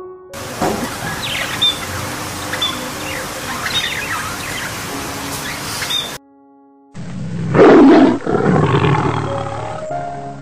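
A lion roaring, loudest about seven and a half seconds in, over soft background music. Before that, short bird chirps over a noisy outdoor ambience.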